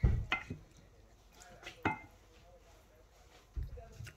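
A few light knocks in the first two seconds and a dull thump near the end: a wooden spoon knocking against a plastic microwave rice pot and being set down, with quiet between.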